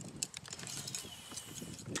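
Fishing reel being cranked to take up line, with scattered light ticks and rattles from the reel and tackle over a low rumble.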